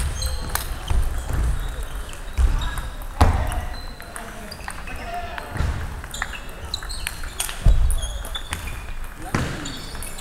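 Table tennis balls clicking off bats and tables in a large hall, with scattered dull thuds on the wooden floor and background chatter.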